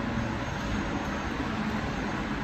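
A steady, even rumble and hiss of background noise with a faint low hum, and no distinct clicks or knocks.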